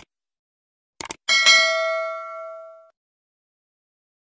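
Subscribe-button sound effect: a quick double mouse click about a second in, then a notification bell ding that rings out and fades over about a second and a half.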